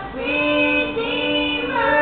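A girl and a boy singing a praise song together without accompaniment, in long held notes that step to a new pitch a few times.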